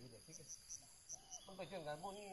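Steady, high-pitched insect drone, with a run of five short high chirps in the first second and a half. A man's voice cuts in near the end.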